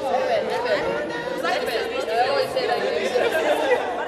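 Several women's voices chattering at once, talking over one another.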